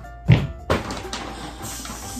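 A volleyball is caught or knocked with a single loud thump, followed by a second of rustling hiss, over background music.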